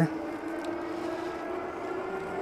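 KBO K2 e-bike's electric hub motor whining under level-5 pedal assist, its pitch rising slightly as the bike speeds up, over steady tyre and wind noise.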